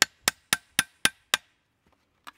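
Hammer driving a large spike through thick-gauge sheet metal laid on a wooden stump, punching nail holes: six quick, sharp blows about four a second, stopping about one and a half seconds in.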